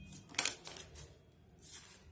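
A deck of tarot cards being handled: two quick sharp snaps about half a second in, then a softer rustle of cards near the end.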